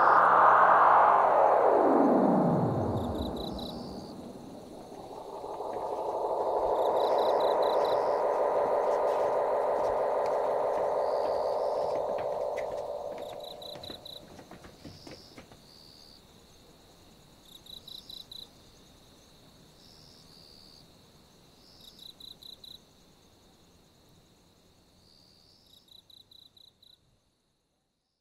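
Effects-laden music sweeping down in pitch and fading out in the first few seconds, then a muffled sustained sound that dies away about halfway through. After that, faint cricket chirps, in short trains of four or five pulses every few seconds, over a faint high steady tone.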